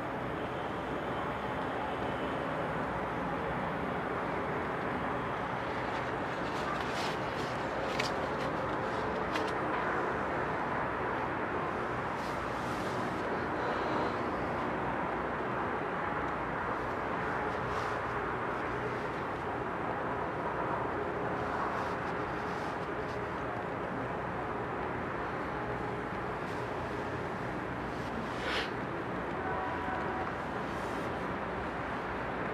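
Flames burning over a plastic toy tractor: a steady rushing noise with scattered sharp crackles and pops.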